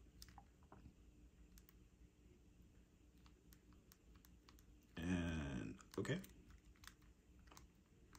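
Faint, irregular clicks of the small plastic keys and navigation button on a Palm Treo 650 being pressed with the thumbs, in an attempt to unlock the phone's key guard. A short spoken sound about five seconds in.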